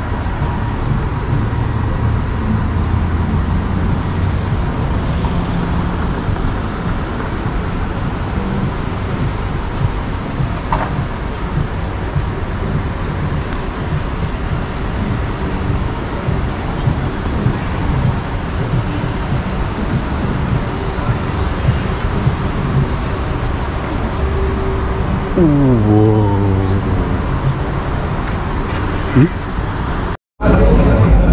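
City street ambience with traffic noise under a heavy low rumble, and indistinct voices of people nearby. Near the end a pitched sound falls steeply in pitch.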